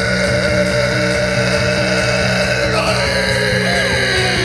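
Hard rock band playing live through a PA, holding a long sustained chord over steady drum beats. The chord shifts to a new pitch about three seconds in.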